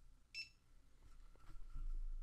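A handheld barcode scanner's single short, high beep, the confirmation of a successful read of the drug bottle's NDC barcode.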